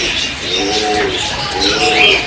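Pigeons cooing in repeated short arching calls, with small birds chirping higher up.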